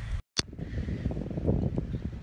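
Wind noise and handling noise on a phone's microphone as the phone is moved about and fitted into a mount. The sound cuts out for a moment near the start, and a click follows.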